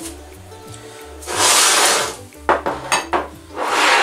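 Kitchenware being moved about on a tabletop: a perforated baking tray lined with parchment paper and ceramic bowls are slid and set down. There are two short spells of rustling and sliding, and a few light clicks and clinks of crockery about two and a half seconds in, over background music.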